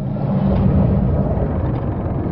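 Film sound design of a room under water: a loud, steady low underwater rumble with a deep hum. It starts abruptly out of silence.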